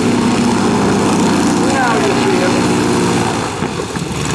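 Stearman biplane's radial piston engine running steadily at low power as the aircraft rolls along the runway after landing, easing off slightly near the end.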